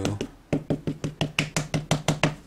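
A small dye-based ink pad tapped rapidly against a wood-mounted rubber stamp to ink it, a quick even run of light taps about nine a second, starting about half a second in.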